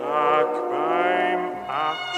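Orchestral music from a recording of a German song: sustained melody lines with vibrato, moving from note to note, with a short dip in loudness about a second and a half in.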